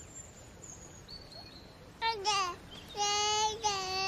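A child's high voice singing: a short call that falls in pitch about halfway through, then two held notes near the end. Before it, two seconds of quiet background with faint high chirps.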